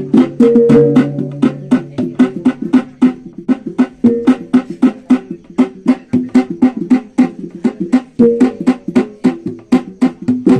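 Sumbanese tabbung gong and drum ensemble playing mourning music: a fast, steady beat of sharp drum strikes over ringing gong tones whose pitches change every couple of seconds.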